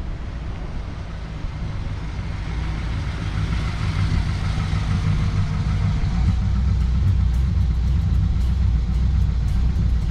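1953 Ford Crestline's 239 cubic inch flathead V8 running as the car drives toward the microphone, a low, steady engine note growing louder for the first half and then holding loud as the car comes close.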